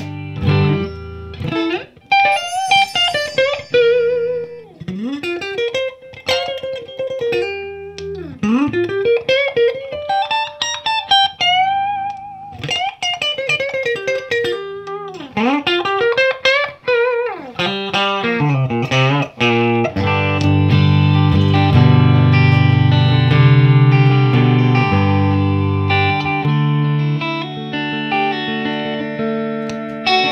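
Sterling by Music Man LK100 electric guitar played through a Marshall JCM2000 amp on its clean tone: single-note lead lines with string bends and vibrato for the first half, then ringing sustained chords through the second half.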